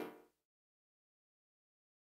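Near silence: digital silence after the faint tail of the modular break-beat music dies away in the first instant.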